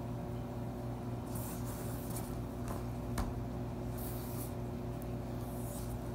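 Handling noise of an iPad being turned on a leather swivel case: faint rubbing rustles and one sharp click about halfway through, over a steady low background hum.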